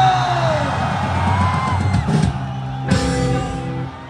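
Live rock band playing the final bars of a song: a held guitar chord under a sung note, with a few drum hits. The music cuts off near the end.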